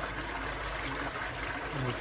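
Water pouring steadily from a wide plastic pipe into a pond tank, splashing on the surface as the pond's water circulates.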